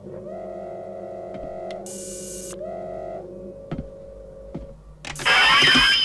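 Film sound effects of a large robot's servo motors: a steady whirring hum with rising whines as its arm moves, and a short hiss of air about two seconds in. Near the end comes a loud hiss with a high, steady tone.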